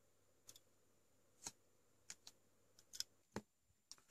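Near silence broken by about eight faint, short clicks and ticks, scattered irregularly, from hands handling a breadboard circuit and the knob of a bench power supply.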